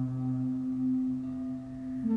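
Ambient sound-healing music: low, steady droning tones held with ringing overtones above them, like a singing bowl.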